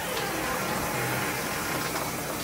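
Steady rushing noise of running water in a tiled bathroom.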